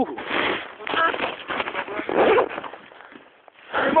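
A snowboarder breathing hard in three or four noisy bursts, with effort sounds, while struggling to dig himself out of deep powder snow.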